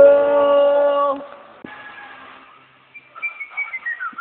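A man's voice holding one long steady howl-like note, carried on from singing, which cuts off about a second in; faint falling whistle-like glides follow near the end.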